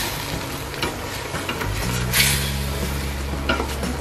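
Chicken pieces and lemongrass sizzling in a stainless steel stockpot while a wooden spatula stirs and turns them. The spatula scrapes twice, once at the start and more loudly about two seconds in.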